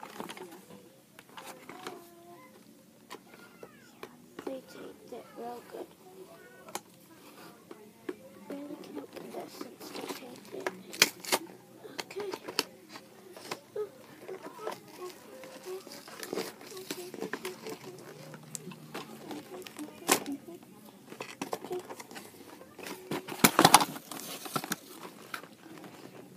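Plastic and cardboard toy packaging being handled and opened by hand: scattered clicks, crinkles and knocks throughout, with a loud cluster of sharp clicks near the end. Soft murmured speech comes in between.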